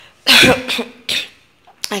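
A woman coughing twice: a loud cough, then a shorter, quieter one about a second in.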